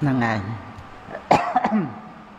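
A man's short voiced sound with falling pitch, then a sharp cough in the second half followed by a couple of smaller catches in the throat.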